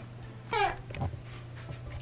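An infant fussing: one short cry falling in pitch about half a second in, then a softer low sound a moment later.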